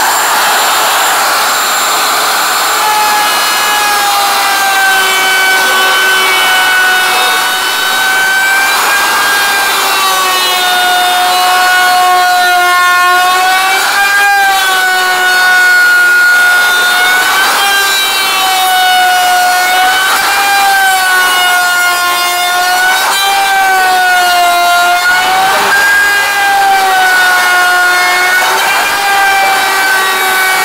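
Electric router with a round-over bit cutting the edges of wooden chair slats: a high, steady motor whine whose pitch sags briefly and recovers every two to three seconds as the bit bites into each slat.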